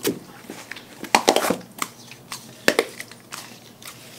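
A dog chewing and crunching through a whole raw fish. A sharp crunch comes right at the start, the loudest run of crunches a little past a second in, and another single crunch near the three-second mark.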